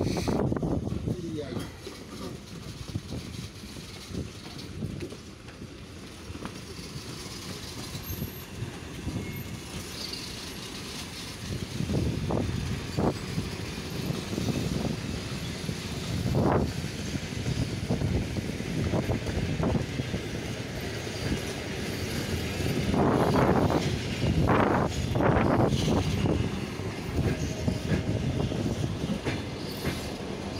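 Passenger coaches rolling out of a station, steel wheels rumbling and clattering over rail joints and points. Single sharp knocks come from about twelve seconds in, and louder runs of clatter follow in the last third.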